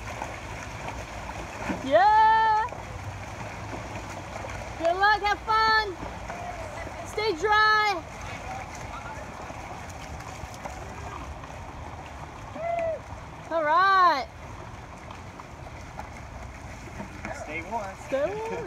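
A few short shouted calls and whoops, about five, each rising and falling in pitch, over a steady wash of water noise as paddleboards are paddled through the water.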